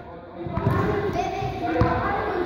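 Children's voices calling out over a football training session, with one thud of a football being struck near the end.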